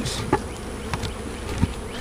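Many honeybees buzzing in flight around the hive, a steady hum of wings. These are foragers from the top split milling back to the hive after their entrance was changed.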